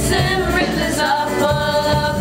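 A girl singing a musical-theatre number into a microphone over musical accompaniment, with long held notes.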